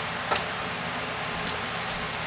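Steady low hiss of background noise with two faint, short clicks, one about a third of a second in and another about a second and a half in.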